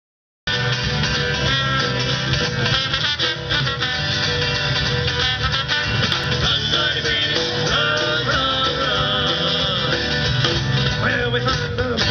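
Live Celtic rock band playing an instrumental passage: trombone lead over electric bass guitar and drum kit. The music cuts in abruptly about half a second in.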